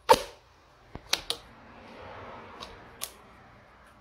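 A cricket bat handle being worked into a vacuum grip-applicator tube and drawn back out with its new rubber grip: a sharp noise right at the start, then a few clicks and knocks about a second in and again near the end.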